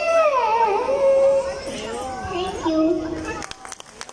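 A young girl's held final sung note bends down and ends about half a second in. Then several children's voices talk and call out over one another, with a few sharp clicks near the end.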